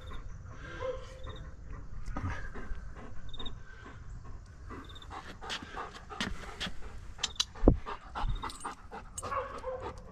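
Bernese Mountain Dog panting, a run of quick breaths, with one sharp thump about three-quarters of the way through.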